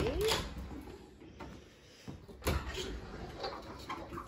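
White bifold closet doors being opened: a click and a short squeak at the start, a brief rattle of the panels, then a sharp knock about two and a half seconds in.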